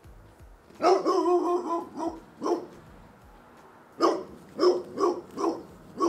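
A dog barking in two bursts: a longer bark about a second in followed by two short ones, then four quick barks from about four seconds in.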